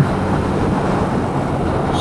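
Steady wind and road noise from riding a Kymco K-Pipe 125 motorcycle, heard through a microphone inside the rider's helmet, with a faint low drone of the small 125 cc engine underneath.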